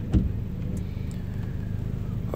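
A steady low hum, with one short knock just after the start.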